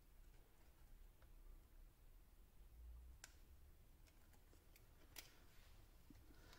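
Near silence, with a couple of faint clicks about three and five seconds in as a balance-lead connector is pressed tighter onto the cell monitor's pin header.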